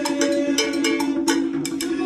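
Conga drums, timbales and cowbell playing together in a fast, continuous percussion rhythm, a dense stream of quick hand and stick strikes.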